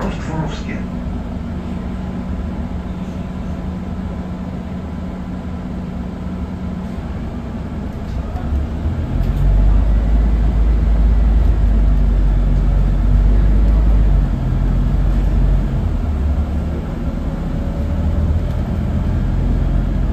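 Inside a Scania CNG city bus with a five-cylinder gas engine: a steady idling hum at first, then about nine seconds in the engine comes up under load as the bus pulls away, with a louder deep rumble that eases a few seconds later.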